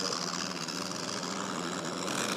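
Hisun Sector 750 UTV engine running steadily at low speed while it slowly reverses a loaded dump trailer.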